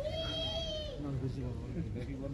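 A single high, drawn-out cry lasting just under a second, meow-like in shape, followed by low talking.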